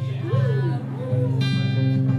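Acoustic guitar starting to play the opening chords of a song, low notes ringing on with a chord change about a second in and a brighter strummed chord shortly after.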